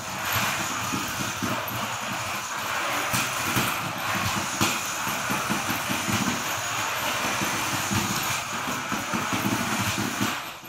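Swerve-drive robot being driven around: its brushless drive and steering motors whir and its wheels roll on a concrete floor, with the noise rising and falling a little as it moves.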